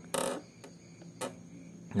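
Handling noise from a Honda Beat's idle air control valve being pressed back into its throttle body: a short scrape near the start, then a couple of faint clicks.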